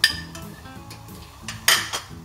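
A metal spoon clinks sharply against a ceramic bowl, with a brief ring, as ingredients are spooned into a clay cooking pot. A second, shorter and noisier clatter comes near the end.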